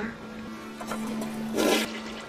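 A toilet being flushed, with a short loud rush of water about one and a half seconds in.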